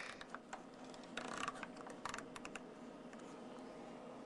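Faint small clicks and rattles from a handheld lensatic compass being handled, irregular and bunched in the first two and a half seconds, then quiet handling.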